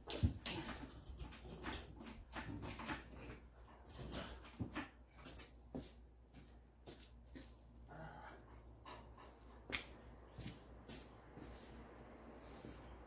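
Faint, scattered clicks and metallic knocks of hands-on work around an engine hoist and the engine hanging from it, with a few sharper clacks, the sharpest a little before the end.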